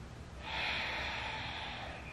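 A person's long audible exhale, starting suddenly about half a second in and tapering off.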